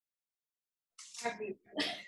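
About a second of dead silence, then a person's short breathy vocal outburst, a puff of breath and voice with a sharp, hissy burst near the end, just before speech resumes.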